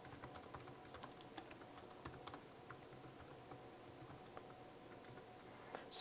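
Faint typing on a computer keyboard: an irregular run of quick key clicks as a short phrase is typed.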